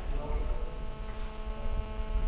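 Steady electrical mains hum in the microphone's sound system: a constant low buzz with a row of even, unchanging tones above it.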